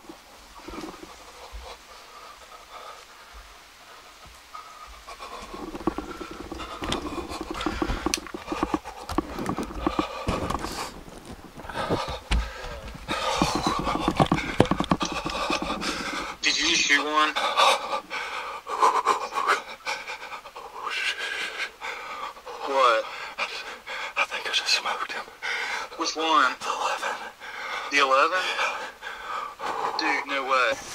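A man breathing hard and fast close to the microphone. It starts quiet and the panting builds about six seconds in. Whispered voice and several short voiced breaths that rise and fall in pitch follow in the second half.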